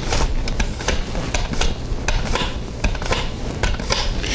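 A zucchini pushed back and forth over a mandoline slicer's blade, slicing off rounds in a quick, even run of scraping strokes, about three a second.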